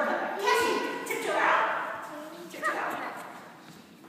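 Voices talking in a large room, not made out as words.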